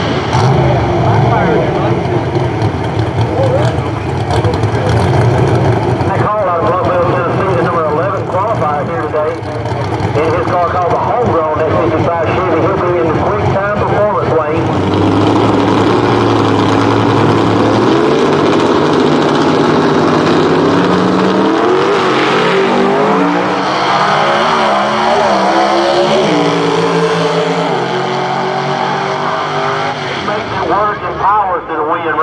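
Gasser drag cars' engines running loud through a burnout and staging at the line, revving hard, then launching, with pitch glides rising as the cars pull away down the strip.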